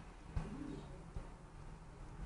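A bird gives a single short, low coo about half a second in, over a faint low rumble, with light clicks just before it and again about a second in.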